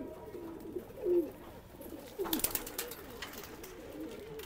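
Domestic pigeons cooing: several short low calls that drop in pitch, with a brief run of sharp clatters about halfway through.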